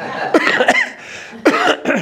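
A man coughing into his fist, in two bouts: one about half a second in and another near the end.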